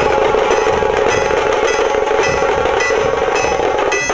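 Lively folk dance music from hand-held drums, with a steady droning note and a metallic ringing strike repeating almost twice a second.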